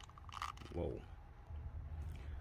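A short plastic click as a tight-fitting hand is forced on the wrist peg of a plastic action figure, followed by low handling rumble.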